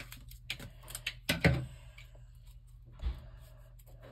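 A few light clicks and knocks of scissors and paper being handled on a wooden tabletop, with a louder knock about a second and a half in and a softer one about three seconds in as the scissors are set down on the table.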